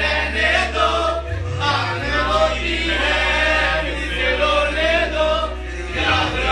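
A group of men singing loudly together in chorus over a song's bass line.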